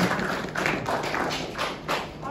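A run of light, irregular taps and knocks, about two a second, from people moving around and handling laptops.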